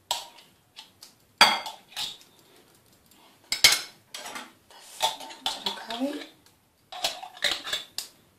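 Kitchen utensils and containers knocking and clinking against a glass mixing bowl, a few separate sharp knocks, while salsa rosa is being added to the bowl.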